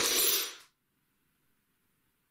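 A clatter with sharp knocks and a thin, high, glassy-metallic ringing, cutting off about half a second in, followed by near silence.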